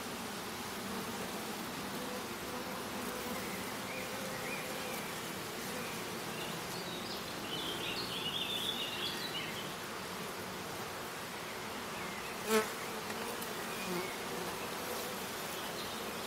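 Steady hum of a honeybee colony, many bees in flight around a hive opened for inspection. A single sharp click about three quarters of the way through.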